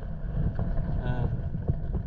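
Wind buffeting the microphone as a steady low rumble. A short voiced sound, like a brief hum, is heard about a second in.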